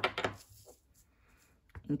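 A few light, sharp clicks of a clear acrylic stamp block being lifted off the paper and set down on the work surface, all in the first moment, then quiet.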